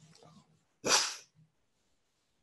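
A woman crying: one short, loud sobbing breath about a second in, with faint low whimpering sounds before and after it.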